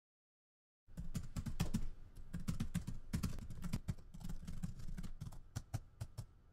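Rapid typing on a keyboard, a quick irregular run of key clicks that starts about a second in.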